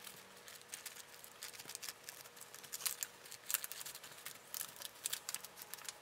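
Softbox diffusion fabric rustling and crackling as hands handle and fit the front diffuser panel, with many small irregular clicks.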